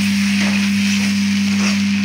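Cabbage stuffing sizzling in a kadhai as a spatula stirs it, over a steady low hum.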